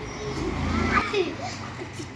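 Young children's voices as they play, high-pitched calls and laughter rising and falling in pitch, with a brief low rumble about half a second in.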